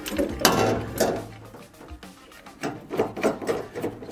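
Clicks and knocks of a steel paint-stand support arm being slid along its bar and set against a car door, several short irregular knocks of metal handling.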